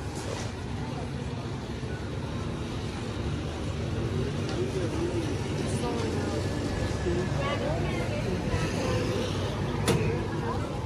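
Street ambience: a steady low traffic rumble, with passers-by talking, most clearly in the middle of the stretch.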